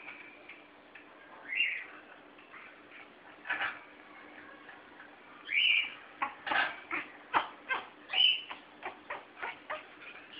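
African grey parrot giving three short high chirps, about a second and a half in, five and a half seconds in and eight seconds in. A click comes in between, and a run of sharp clicks, two or three a second, fills the second half.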